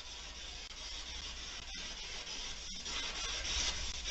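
Faint, steady static from an SB7 spirit box sweeping radio frequencies, with two brief cuts about a second apart.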